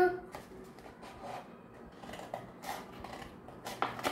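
Scissors snipping through a paper cone: faint, scattered cuts and paper handling, with a couple of sharper snips near the end.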